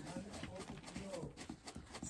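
Faint, irregular thuds of pearl millet (mahangu) being pounded with wooden pestles in a mortar.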